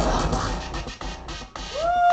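Live band music with deep bass. About a second in it breaks into choppy stop-start cuts, and near the end a single pitched note swoops up and falls away.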